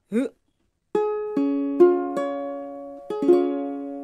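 Ukulele with a capo on the first fret playing a C chord. The four strings are plucked one at a time, about half a second apart, and then the chord is strummed about three seconds in and left to ring and fade.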